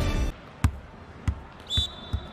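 A volleyball dropping onto the court floor and bouncing, the bounces coming quicker and quicker as it settles. A brief high squeak sounds just before the third bounce.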